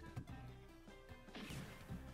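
Online slot game audio: quiet game music with a crash-like blast effect about one and a half seconds in, as wild symbols are blasted onto the reels.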